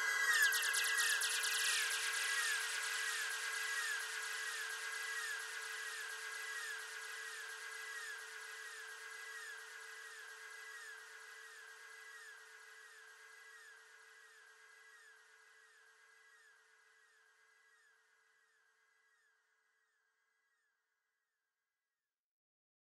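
The closing tail of a drum and bass track: the beat has stopped, and a lone sustained synth tone with a repeating warble fades away over about twelve seconds.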